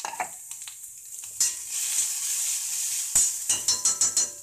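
Food frying in a black kadai over a gas flame, stirred with a metal spatula. A loud sizzle comes up about a second and a half in, and near the end the spatula knocks sharply once against the pan, then scrapes and clicks several times.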